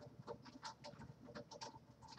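Faint crackling and rustling of fingers separating and fluffing coiled natural hair close to the microphone, several quick crackles a second.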